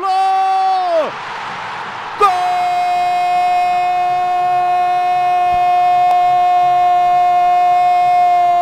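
Football TV narrator's drawn-out goal shout, "Gol!": a short held cry that falls away about a second in, a moment of crowd cheering, then one long unbroken "Goooool" held at a steady pitch.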